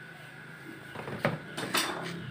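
Plastic control-panel cover of a twin-tub washing machine being handled: a sharp knock a little past a second in, then a short scraping rattle near the end.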